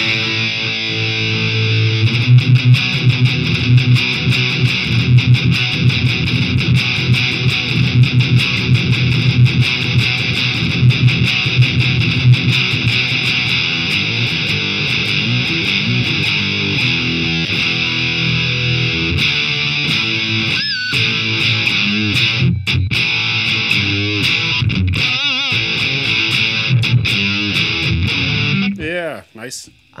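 Distorted electric guitar played through the VoiceLive 3's scooped amp model, a thrashy, metallic high-gain tone with boosted lows and highs, in fast picked rhythm riffing. The playing stops just before the end.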